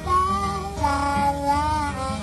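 Acoustic blues music: a guitar accompaniment under a high, wavering melody line that bends in pitch.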